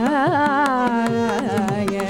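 Carnatic vocal music with violin and mridangam: the voice and violin line waver in quick ornamented turns, then settle into a held note about halfway through, over steady mridangam strokes.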